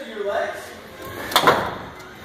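Indistinct talking, with one sharp knock about a second and a half in.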